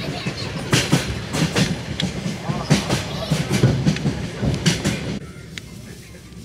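A foil crisp packet crinkling with irregular sharp crackles as it is handled close to the microphone, over the steady running rumble of a passenger train. The crinkling stops about five seconds in, leaving the train rumble.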